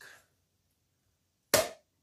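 A single sharp click about one and a half seconds in, from a flat screwdriver prying at the sealant-bonded seam of a Bosch EDC15 ECU's metal lid.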